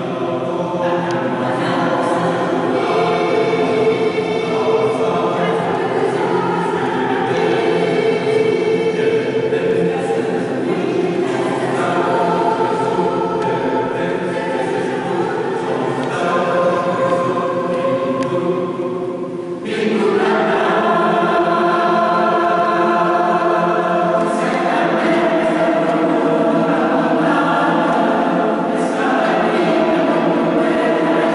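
Mixed choir of men's and women's voices singing in sustained, chordal phrases. After a brief dip about two-thirds of the way through, a louder passage begins.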